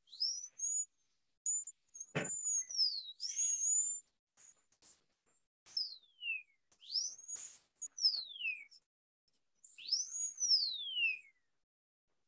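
High-speed air-turbine dental handpiece (dental drill) run in about eight short bursts against a tooth. Each burst is a high whine that rises and then slides down in pitch, over a hiss of air and water spray. There is a brief knock about two seconds in.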